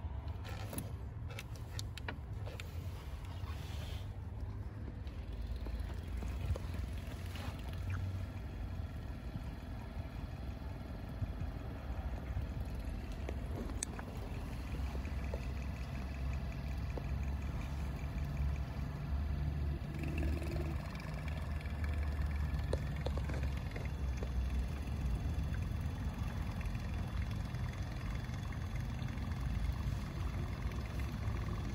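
Small diaphragm pump running steadily with a low hum, sucking power steering fluid out of the reservoir through a hose into a bottle. A few light clicks and knocks in the first few seconds.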